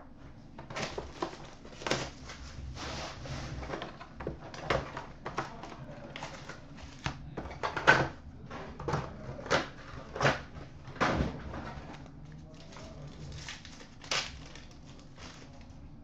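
Handling and tearing of trading-card packaging: a hockey card box being opened and its packs pulled out and ripped open, heard as a run of short, sharp crinkles and rips of uneven loudness.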